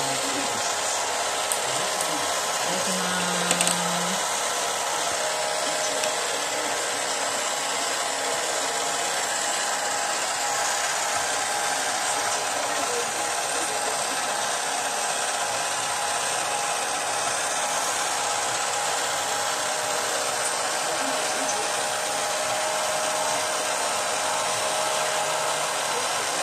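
Toy conveyor-belt sushi set's small electric motor and belt running: a steady whir with a faint constant hum.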